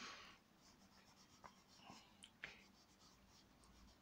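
Near silence, with a few faint scratches and ticks of a chalk pastel on paper, the clearest about two and a half seconds in.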